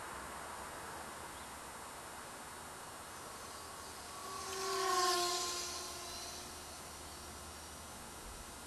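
Small electric RC plane's propeller and motor hum swelling and fading as it flies past, loudest about five seconds in, the pitch dropping slightly as it goes by, over a steady background hiss.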